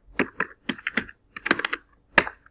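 Computer keyboard keys being typed: about eight quick, uneven keystrokes as a word is typed in.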